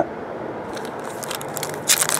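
Foil trading-card pack wrapper crinkling as it is handled and torn open by hand. The crackling starts about a second in and grows louder near the end.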